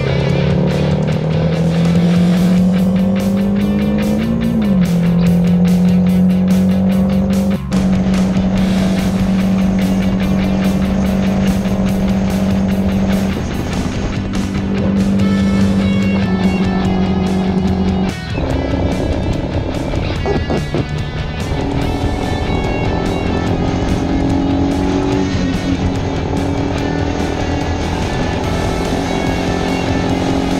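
Single-cylinder engine of a 2009 Suzuki GZ250 motorcycle running at road speed with wind noise, mixed with background music.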